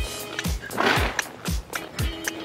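Background music with a steady beat, a deep kick drum about twice a second with sustained synth tones over it.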